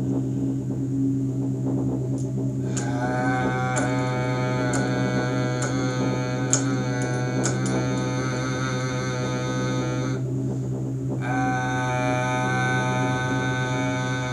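A man chanting a long, steady 'ah' tone, the vowel sound of the heart chakra, held for about seven seconds, then a breath and a second held 'ah', over a steady low hum.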